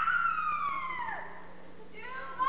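A high voice sliding down in one long falling shriek that fades out a little over a second in, over a faint steady low hum.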